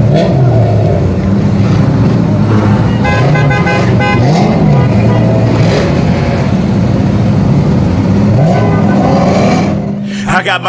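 Car engines revving up and down as cars spin doughnuts at a street sideshow, with several short car-horn honks about three to four seconds in.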